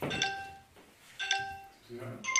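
Two bell-like electronic chimes about a second apart, each struck sharply and ringing out briefly. They are countdown tones for the start of a game round.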